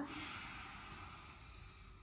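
A long, deep breath out through the open mouth: a breathy rush of air that starts strong and fades away over about a second and a half.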